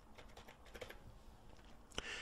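Faint computer-keyboard typing: a short run of keystrokes about half a second in as a figure is keyed into a field.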